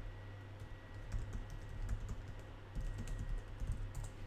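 Faint typing on a computer keyboard: a run of light, irregular keystrokes over a low steady hum.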